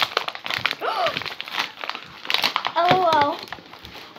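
White paper wrapping crumpling and tearing as it is pulled by hand off a toy ball, in many quick crinkles. A short voice sound comes about a second in and a longer one near three seconds.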